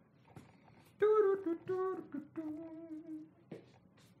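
A man's voice humming a short tune of a few held, fairly high notes, with a soft click just after it ends.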